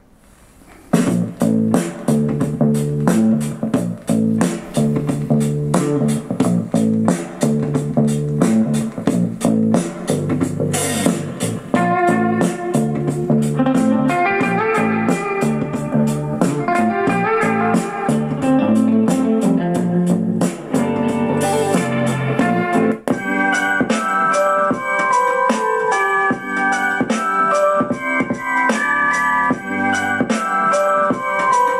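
Music played through the iHome Aquio Bluetooth speaker bottle as a sound sample. After a brief dropout at the start, a track with a steady beat plays, and about three quarters of the way through it changes to a different track.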